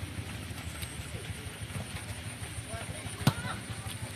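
Faint, distant shouts of footballers across an open pitch over a steady low rumble, with one sharp knock about three seconds in.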